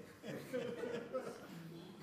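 Faint, soft chuckling and murmuring voices, with no clear words.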